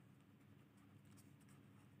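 Near silence with the faint scratching of a pen writing on ruled notebook paper.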